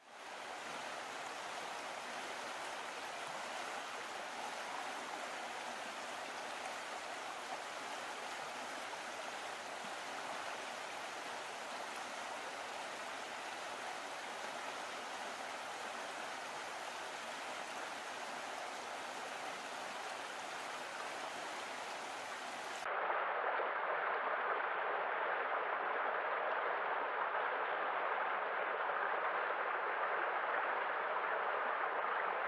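Steady rushing of a small waterfall pouring down a rock face. About three-quarters of the way in, it cuts abruptly to the louder, brighter rush of a shallow stream running over rocks.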